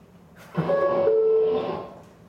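A two-note descending chime, the first note held briefly and the second lower and longer, played live on an instrument as the subway car's chime.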